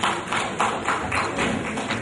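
Audience applauding, with distinct, uneven claps several times a second.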